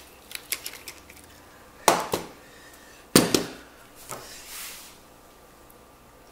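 Handling noises of Nikon DSLR bodies: a few light clicks, then two sharp knocks about a second apart as the cameras are set down on a hard tiled tabletop, and a softer knock after.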